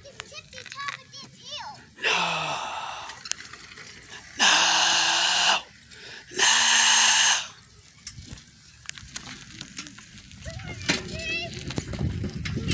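A person yelling out loud and long: one shout about two seconds in, then two drawn-out yells of about a second each around four and six seconds in.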